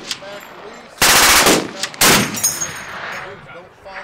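A Browning .50-calibre heavy machine gun fires two short bursts about a second apart, each roughly half a second long. A rolling echo trails after each burst.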